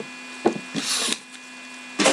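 A stack of trading cards handled on a desk: one short knock about half a second in, then a brief papery swish as the cards are slid together and set down.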